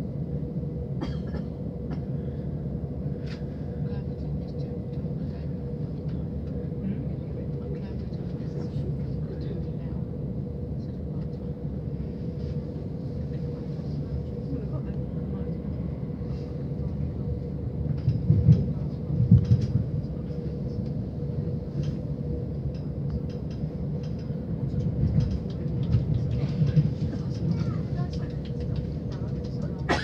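Southern Class 377 electric multiple unit heard from inside the carriage as it moves off: a steady low rumble of wheels on track with a faint steady hum. There are louder low surges about two-thirds of the way through and again near the end.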